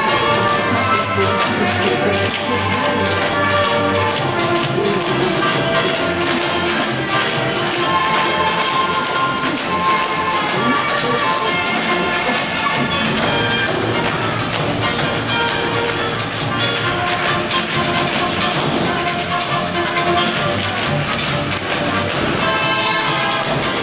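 Tap shoes of a group of dancers striking a stage floor in quick, steady, dense taps, over music.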